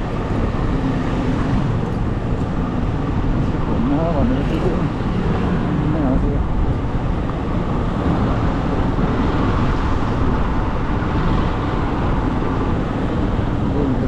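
Motorcycle riding through city traffic: a steady engine and road rumble, heavy with wind noise on the bike-mounted microphone.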